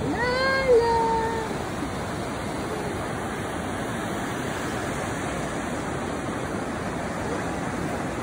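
A toddler's high-pitched squeal, about a second long, near the start, rising, holding and then falling away. Under it the steady rush of surf breaking on the beach.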